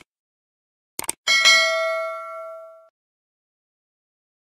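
Subscribe-button animation sound effect: two quick mouse clicks about a second in, then a bright notification-bell ding that rings on for about a second and a half and fades away.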